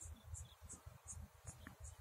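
Faint, evenly spaced high-pitched chirps, about three a second, from an insect such as a cricket, over a low background hum.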